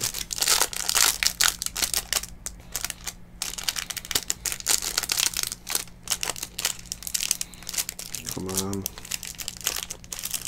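Clear plastic card sleeves crinkling and crackling as trading cards are handled and slid into sleeves, in quick irregular clicks. A short hummed voice sound comes about eight and a half seconds in.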